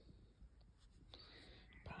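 Near silence: room tone with a faint, soft hiss about a second in, then the start of a woman's word at the very end.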